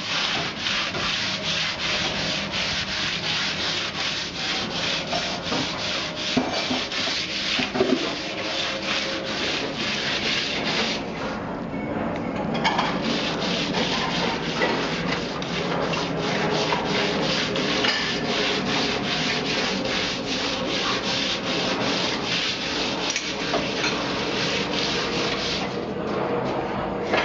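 A hand tool rubbed back and forth against a concrete wall in rapid, even strokes, a gritty scraping that pauses briefly about eleven seconds in.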